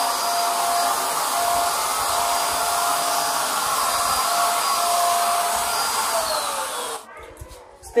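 Buildskill Pro 750 W electric HVLP paint sprayer running with a steady whine and rushing air as it sprays paint onto a wall. About six seconds in it is switched off: the whine falls in pitch as the motor winds down, and the sound stops about a second later.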